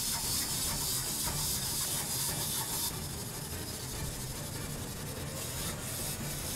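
Small walking Superman toy figure's mechanism whirring steadily, easing a little about halfway through.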